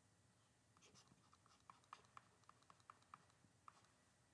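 Faint, irregular ticks and light scratches of a stylus writing on a tablet screen, starting about a second in. Otherwise near silence.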